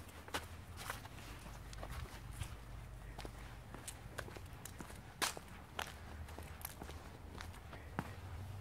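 Footsteps walking over a dirt path and concrete paving slabs, reaching wooden deck boards near the end. The steps come as irregular soft clicks, a few sharper than the rest, over a steady low rumble.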